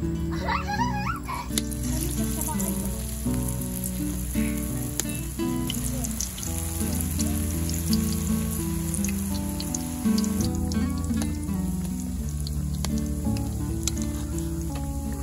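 Banana blossom batter nuggets deep-frying in hot oil in a wok: a steady sizzle with many small crackles and pops. Background music with held notes plays underneath.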